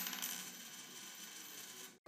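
Faint sound effect of a logo transition: a high ringing shimmer that slowly fades, then cuts off suddenly at the end.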